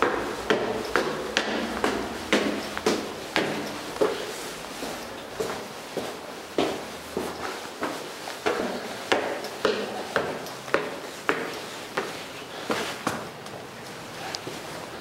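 Footsteps climbing metal stair treads, about two steps a second, each step a sharp knock.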